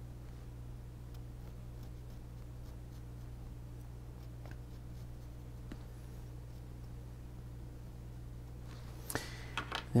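Faint, sparse scratching of a pencil drawing a line on a basswood carving block, over a steady low hum. A few sharper clicks come just before the end.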